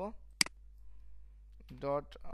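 A single sharp click about half a second in, typical of a computer mouse button or key, followed by quiet room tone until a man's speech resumes near the end.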